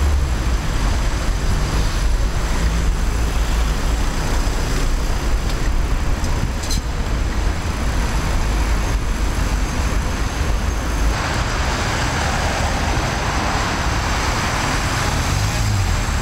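City traffic noise heard from a moving bicycle, with a steady low rumble of wind on the microphone. A louder hiss rises about eleven seconds in and fades again near the end.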